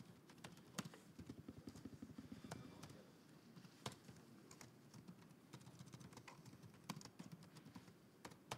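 Faint typing on a computer keyboard: irregular keystroke clicks, several a second, with a few louder taps.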